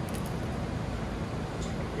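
Steady hum of commercial kitchen ventilation, with a couple of faint, brief small noises near the start and near the end.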